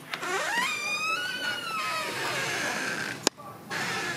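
A man's long, wordless drawn-out vocal sound from someone worn out, sliding up in pitch over the first second and then slowly falling for about two more seconds. A single sharp click follows near the end.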